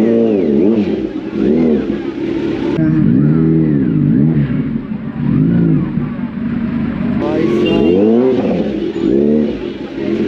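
Kawasaki Z900 inline-four engine revved in short throttle blips, its pitch rising and falling about eight times, roughly once a second.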